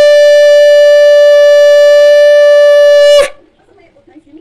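Conch shell (shankh) blown in one long, loud, steady-pitched blast that cuts off about three seconds in.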